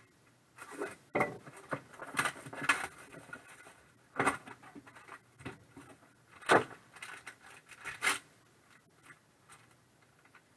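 Silver foil card pouches crinkling and rustling as they are handled and pulled open, in irregular bursts with a few sharper crackles.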